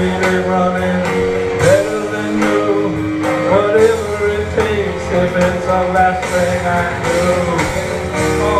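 Live rock band playing a song, with guitar and a steady drum beat.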